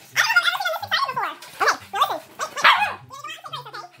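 Husky-type dogs 'talking': four or five loud, howl-like yowls and whines in quick succession, each bending up and down in pitch.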